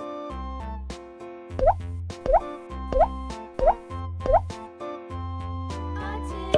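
Cheerful children's background music with five short rising 'bloop' sound effects, about two-thirds of a second apart, from about a second and a half in.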